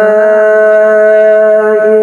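A male qari's voice, amplified through a microphone, holding one long, level note in melodic Quran recitation. The note breaks into ornamented melody near the end.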